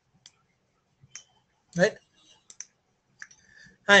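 A few short, sharp computer mouse clicks, two of them in quick succession about halfway through.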